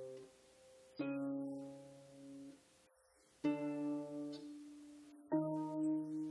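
Douglas Harp Co single-action lever harp with 33 strings, played in slow plucked chords. Three chords come about a second in, midway and near the end. Each rings on until it is damped or the next chord is struck.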